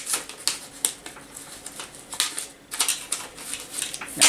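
Stiff paper and card being handled and flexed by hand: a run of irregular, short crisp rustles and flicks.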